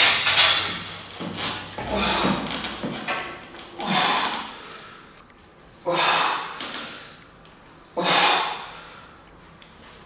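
A man breathing hard through a set of seated cable rows: a forceful exhale about every two seconds, each starting sharply and fading over about a second, in time with the pulls.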